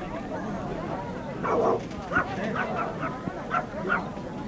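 A dog barking in a string of short barks, the first a little longer, over background crowd chatter.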